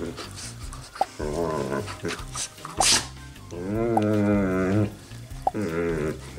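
A dog's pitched, wavering play vocalizations as it mouths at a person's hands: three calls, the longest about a second and a half in the middle, with a short sharp burst of noise just before it.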